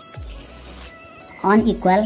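A person's voice, one short drawn-out sound about one and a half seconds in, over faint background music.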